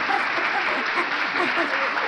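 Audience applause, a steady dense clatter of clapping in response to a joke's punchline.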